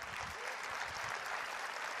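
A large conference audience applauding, a dense steady clapping that begins just before and carries on to the end.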